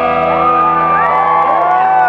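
A rock band's last chord ringing out on electric guitars, held and slowly fading. From about half a second in, audience members whoop and shout over it.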